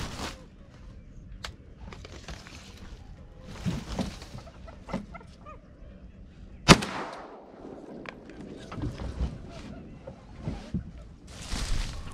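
Rustling and small knocks of a camera being handled, then a single loud shotgun shot about two-thirds of the way through that rings out briefly: a duck hunter firing on a teal.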